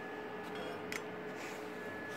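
Quiet workshop room tone: a steady hum with a faint high whine, and one light click about a second in. No welding arc is running.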